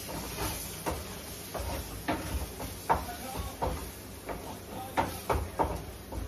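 A dozen or so sharp clicks and knocks of kitchen containers and utensils being handled, over a steady hiss.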